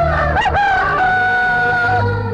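Film background score: a sustained high, theremin-like lead note over a steady low drone. The note wavers and slides briefly about half a second in, then holds steady.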